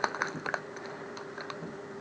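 A few light clicks and crinkles from hands handling a small foil blind-bag packet and its paper leaflet on a tabletop. The clicks are clustered in the first half second, with a few fainter ticks later.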